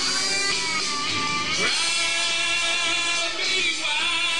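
Karaoke backing track of a country-rock song playing loudly, a full band with guitar prominent, during a stretch with no lead vocal.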